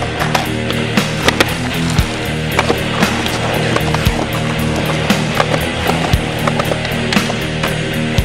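Skateboard wheels rolling on pavement, with sharp clacks of the board, under loud rock music with a steady beat.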